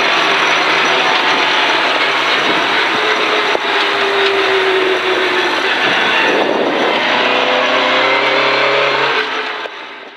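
Rally car heard from inside the cabin, driving on a gravel forest road: the engine runs under steady load over a constant rush of tyre and gravel noise, its note sagging and then rising again. There is a single sharp knock about three and a half seconds in, and the sound fades out near the end.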